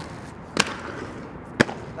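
Aggressive inline skates hitting a concrete ledge as a skater locks into a grind: a sharp knock about half a second in, a brief scrape along the ledge, then a louder smack about a second later as the skates come down on the ground.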